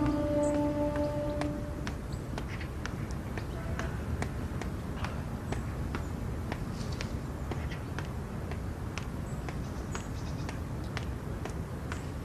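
A soft music chord fades out over the first two seconds. Then comes a steady outdoor background hum with scattered light ticks and taps, consistent with footsteps on a park path.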